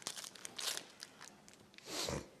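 Quiet crinkling and tearing of sterile paper-and-plastic medical packaging being handled and opened, with small handling clicks and two louder rustles, one about two-thirds of a second in and one near the end.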